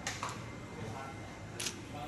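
A few short camera shutter clicks as a group is photographed, the loudest about one and a half seconds in, over faint background chatter.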